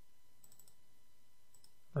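A few faint clicks from a computer keyboard and mouse during copy-and-paste editing, over quiet room hiss.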